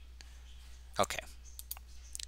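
A few faint computer mouse clicks over a low steady hum, with one short spoken word about a second in.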